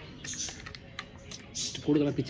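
Eating sounds: fingers picking at pieces of crab in gravy and mouth sounds of chewing, a scatter of small, irregular clicks and crackles.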